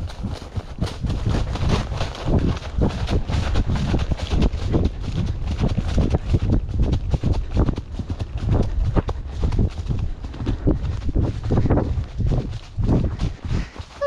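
A Paso Fino horse's hooves crunching through deep dry fallen leaves at a quick, even gait, a steady run of rustling footfalls over a low rumble.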